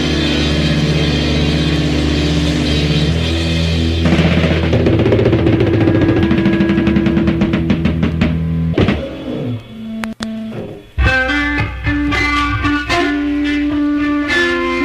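Heavy psychedelic rock played by a band of electric guitar, bass and drum kit. Nearly nine seconds in, the full band drops away for a couple of seconds, and then a picked guitar riff comes in over the drums.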